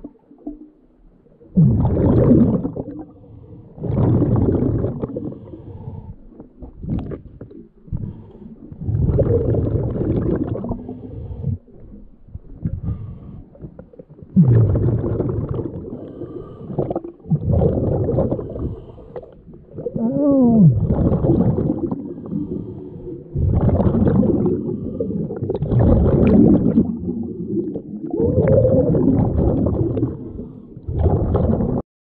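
Scuba diver breathing underwater through a regulator: loud rumbling bursts of exhaled bubbles, each lasting a second or two, repeating every few seconds, some with a wavering pitch.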